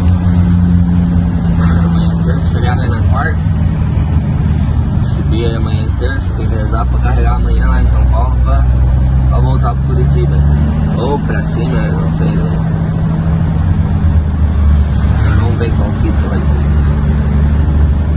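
Truck engine running under way, heard from inside the cab as a steady low drone whose pitch shifts slightly partway through, with bits of speech over it.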